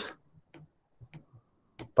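A few light ticks of a stylus tip tapping on a tablet's glass screen during handwriting, irregularly spaced, about five in two seconds.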